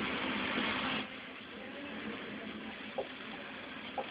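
Steady low hiss of a recording microphone. A louder stretch with the fading end of music stops about a second in, and a single short click, like a computer mouse click, comes about three seconds in.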